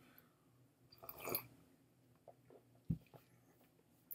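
Quiet room tone with a brief mouth noise about a second in and one sharp click just before three seconds.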